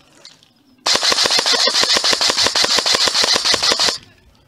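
Airsoft electric gun (Amoeba AM-014 Honey Badger AEG) firing one continuous full-auto burst of about three seconds, roughly ten shots a second, starting about a second in and stopping just before the end.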